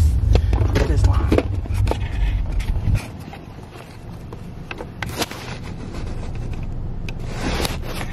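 Low rumble inside a moving car, cutting off abruptly about three seconds in. After that comes a quieter car interior with scattered clicks and rustling.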